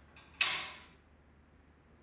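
Heavy metal prison door opening: a sudden creak a little way in that fades out within about half a second.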